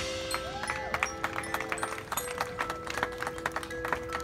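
Drum line's front ensemble playing a soft passage: many light, quick mallet notes on keyboard percussion such as marimba and xylophone over a couple of long held tones.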